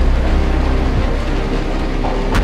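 Film trailer soundtrack: a loud, steady, deep rumbling drone with a few held tones above it.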